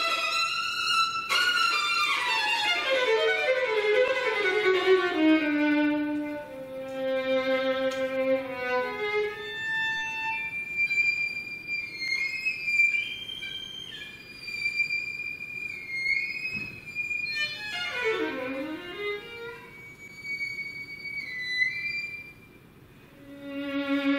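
Solo violin playing unaccompanied: a long descending run of notes in the first half, then high sustained notes, and near the end a quick run down to the low register and straight back up.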